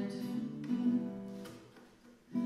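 Acoustic guitar played alone between sung lines, with a strum about two-thirds of a second in that rings on and fades away near the end.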